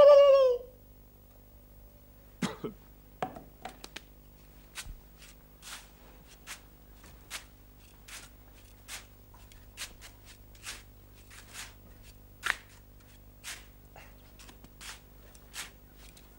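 A small hand tool digging into sand: short, quiet scraping strokes, a few at first and then roughly one every 0.8 seconds, over a faint steady low hum.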